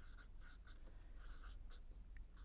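Felt-tip marker writing numbers on a paper sheet: a series of short, faint scratching strokes.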